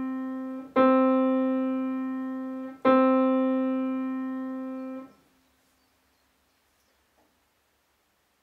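Grand piano playing one note over and over: a note already ringing is struck again twice, about two seconds apart, each time sounding big and fading slowly. The last is damped off suddenly about five seconds in. These are the big, long, repeated notes of a thumb chiming exercise.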